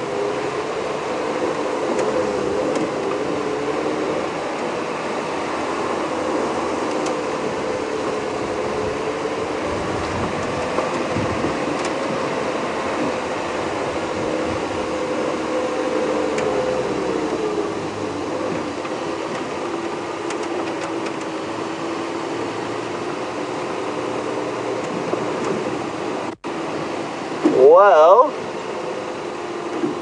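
Engine of an open safari game-drive vehicle running as it drives along a dirt track, a steady drone whose pitch drifts slowly with speed. Near the end the sound cuts out for an instant, followed by a brief, louder wavering sound.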